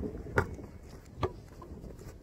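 Two short knocks a little under a second apart, over a faint low rumble.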